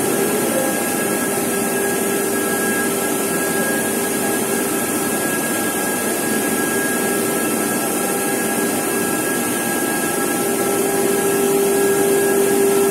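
Tea-processing factory machinery running: a steady, loud drone with a few held hum tones in it.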